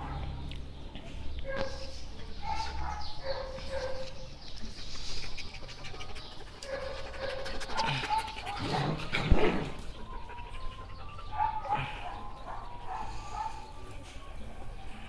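Egyptian Baladi dog making short whines and yips while mouthing a rubber toy, with one louder outburst about nine seconds in.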